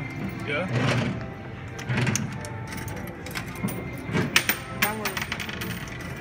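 Coins dropping into a coin-operated kiddie ride, with a quick run of sharp clicks and clinks about four seconds in, amid children's voices.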